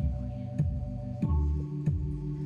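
Live electronic music: held synthesizer chords over a steady kick-drum beat of about one and a half beats a second. The chord changes about a second in.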